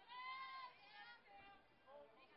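Faint, distant human voices: one held, high-pitched call lasting about half a second at the start, followed by a few fainter calls.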